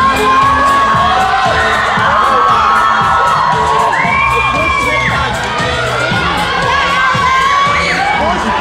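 Audience screaming and cheering, many high-pitched shrieks overlapping, with one long held shriek about four seconds in.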